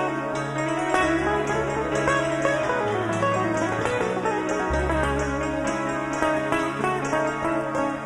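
Rock band playing a slow piece live, with clean plucked guitar over held bass notes that change pitch every second or two.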